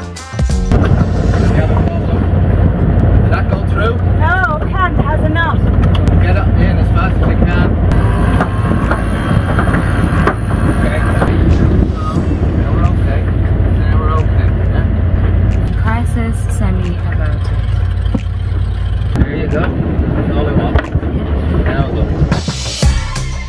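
Wind buffeting the microphone aboard a sailing yacht under sail, a loud, steady low rumble throughout.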